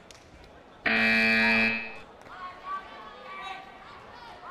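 Competition scoreboard timing buzzer sounding one loud, steady tone for about a second, starting a little under a second in. It marks the end of the rest period between rounds.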